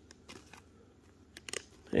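Quiet room with faint handling of a trading card by hand, with a few small clicks about a second and a half in.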